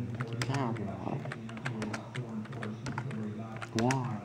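Quick, irregular clicks like typing on a computer keyboard, over a steady low hum and a muffled voice that is not made out as words.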